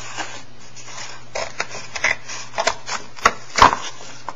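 Scissors cutting through a cardboard egg carton: a run of short, sharp snips and crunches, starting about a second and a half in and loudest near the end.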